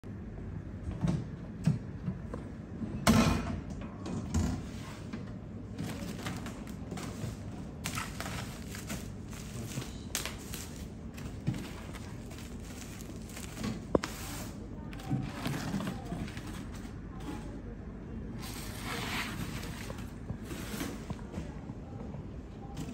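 Handling of a wooden shipping crate: a few knocks and thuds in the first seconds as its lid is opened, then the rustling and crackling of inflatable plastic air-column packaging being pulled out, with a sharp click about two-thirds of the way through.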